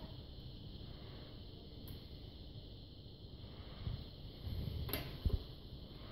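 Quiet room tone with faint handling noises: soft low thumps near the end, a sharp click about five seconds in, and a short dull thud just after it.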